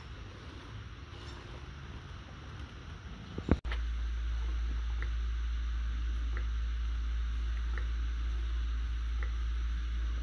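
Wind rumbling unevenly on the microphone outdoors for the first three and a half seconds. After an abrupt cut, a steady low hum follows, with a few faint clicks.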